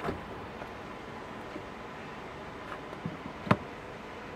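Tesla Supercharger connector pushed into a Model 3's charge port, seating with one sharp click about three and a half seconds in, over a steady background hiss.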